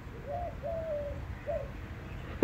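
Faint bird calls: three short, soft notes held at one pitch, the middle one the longest.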